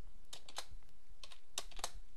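Computer keyboard being typed on: a handful of separate keystrokes at an irregular pace.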